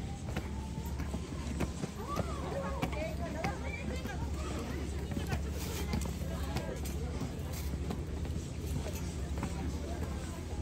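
Faint talk from several people on the path, heard in snatches, over a steady low rumble.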